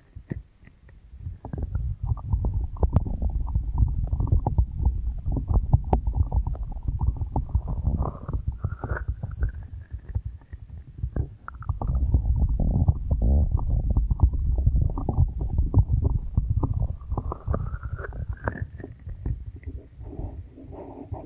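Hands cupping, rubbing and patting the silicone ears of a binaural microphone. This gives a deep, muffled sound with a dense run of soft pats and skin-on-silicone contact noise, swelling and easing as the palms close over and open from the ears.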